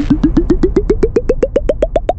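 Cartoon sound effect: a fast run of short blooping tones, about eight a second, climbing steadily in pitch, over a low rumble.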